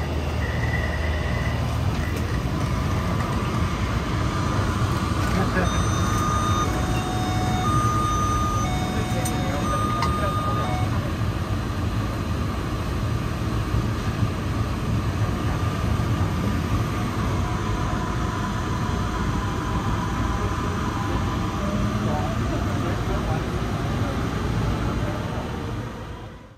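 Taipei MRT Bannan Line train: a steady low rumble with passengers' voices, broken by a series of short electronic beep tones between about 6 and 11 seconds in as the doors close. The train then pulls away and runs on steadily.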